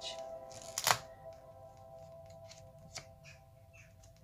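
Soft background music holding a steady chord. About a second in comes one sharp paper rustle as a spiral-bound sketchbook page is turned by hand, followed by a few faint light ticks.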